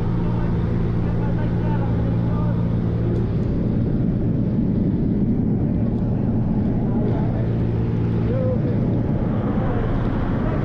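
Steady drone of a light jump plane's engine and propeller, heard from inside the cabin. From about three to eight seconds in, a louder rushing noise covers the drone's even tone.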